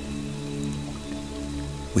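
Soft ambient music bed of low, held tones layered over a steady hiss of rain sounds.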